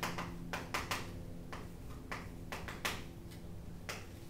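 Chalk writing on a chalkboard: a string of short, irregular taps and scratches as letters are formed, over a faint low steady hum.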